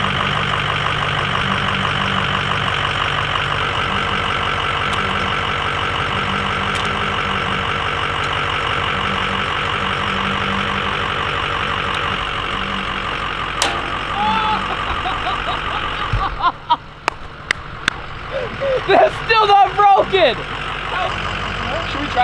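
Pickup truck engine running steadily with a fast, even chatter. About sixteen seconds in, a low thump comes and the engine sound drops away, followed by excited shouts.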